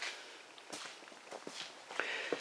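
Faint footsteps, a few soft steps as someone walks across a garage floor.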